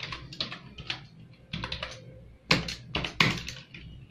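Typing on an external computer keyboard: irregular runs of key clicks, with a few harder strokes in the second half.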